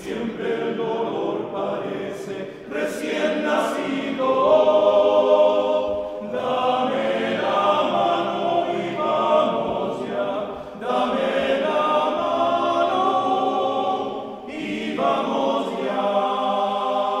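Male-voice choir singing in Spanish, in phrases of about four seconds with brief breaths between them.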